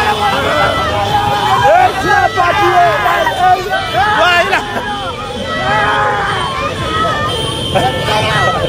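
A street crowd shouting and calling out over one another, many excited voices at once, with a car's running noise underneath.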